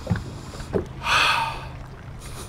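A man taking one long sniff through the nose, about a second in, with a freshly caught bass held to his face.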